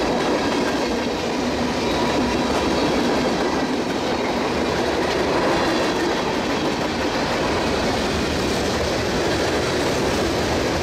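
Freight train cars, tank cars and then covered hoppers, rolling past close by at speed: a steady, loud rolling noise of steel wheels on rail, with faint thin ringing tones over it.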